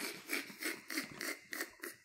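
Quiet, breathy laughter: a run of short pulses, about three to four a second.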